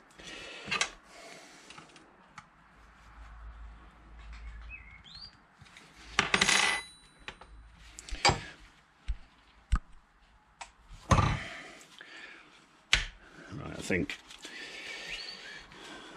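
Scattered metallic clicks, knocks and short scrapes as a motorcycle gear-shift linkage rod clamped in a steel bench vise is twisted and worked by hand, trying to free a joint seized with corrosion.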